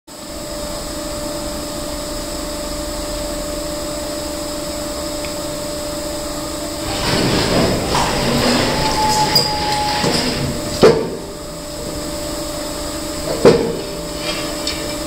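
Hydraulic Steinex stone splitter running with a steady hum. From about seven seconds in, a granite boulder grinds and scrapes as it is levered across the machine's steel table with a pry bar, followed by two sharp metal clanks near the end.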